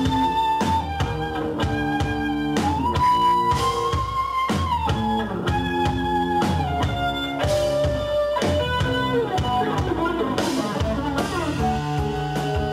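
Live avant-rock band playing: electric guitar, drums and flute, with long held notes that slide from pitch to pitch over a dense, busy accompaniment.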